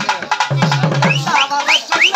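Karagattam folk-music band: double-headed drums beaten with sticks in a fast, driving rhythm. Short, shrill notes gliding upward repeat above the drumming in the second half.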